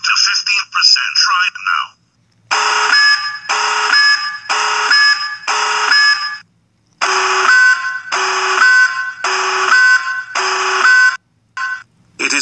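Loud electronic warning alarm sound effect, repeating in two-tone bursts that step down in pitch: four bursts, a short break, then five slightly lower bursts. It opens with about two seconds of a distorted, wavering voice.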